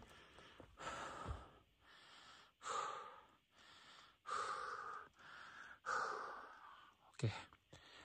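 A man breathing hard from the exertion of climbing a steep mountain trail: a series of heavy breaths in and out, about one a second.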